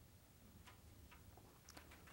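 Near silence: room tone with a low hum and a few faint, scattered ticks.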